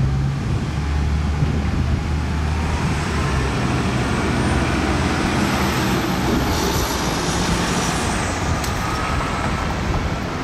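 Gillig low-floor transit bus pulling away through a turn: a steady low engine drone with a faint whine that climbs slowly in pitch as it gathers speed. A thin high whine rises and falls about midway.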